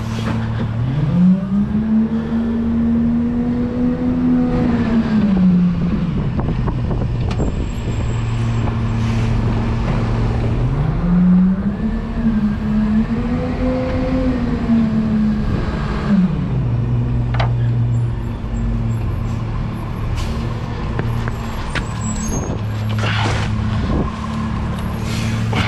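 A McNeilus rear-loader garbage truck's diesel engine heard from the rear riding step: it revs up and falls back to idle twice, each rise holding for about four seconds, as the truck pulls ahead between stops. A few short sharp clicks or hisses come in the second half.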